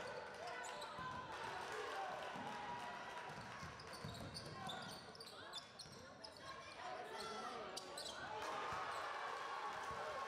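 Live game sound in a gymnasium during a basketball game: the ball bouncing on the hardwood court amid the indistinct voices of players and spectators.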